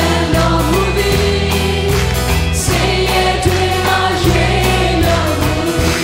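A Christian worship song sung in Burmese by a group of voices together, backed by a band with bass guitar and drums keeping a steady beat.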